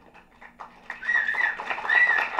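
A high, thin whistle in short wavering phrases, coming in about a second in over faint room noise, like a person whistling in the audience.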